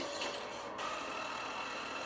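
Film trailer sound design playing through computer speakers: a hissing rush that cuts off suddenly under a second in, then a steady background with faint held tones.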